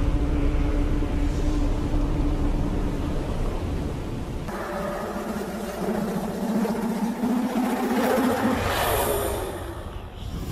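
Film soundtrack: a deep rumble under a held low note. It changes abruptly about four and a half seconds in to a different sustained low drone that grows brighter and fuller toward the end.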